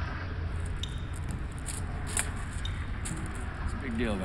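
Steady low background rumble with a few faint, short clicks and ticks.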